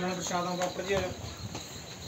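An indistinct person's voice for about the first second, fading out, over a faint steady high-pitched tone.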